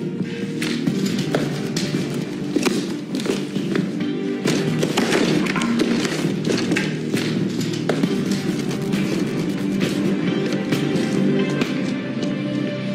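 Dramatic film score with a low sustained musical bed, cut through by a rapid series of sharp hits and thuds from fight sound effects.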